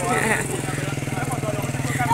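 A vehicle engine idling steadily, a low even hum with a rapid pulse.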